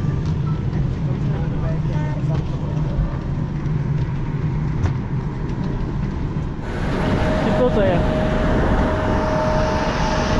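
Steady low hum of an airliner cabin, with passengers murmuring and moving in the background. A little over two-thirds of the way through, it changes abruptly to a louder, brighter noise with a steady high whine.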